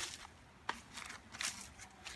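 Quiet, irregular crunching and crackling of footsteps through dry leaf litter, with a sharp click a little under a second in.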